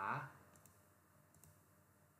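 A few faint computer mouse clicks as lines are picked on screen, the first about half a second in and another about a second later.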